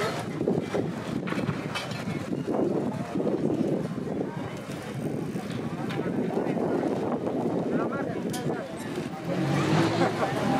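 Busy city street ambience: traffic running steadily, mixed with the voices of passers-by talking in the background and a few short knocks.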